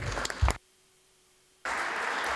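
Applause in a large chamber, cut off about half a second in by roughly a second of near silence as the sound feed drops out, then starting again abruptly.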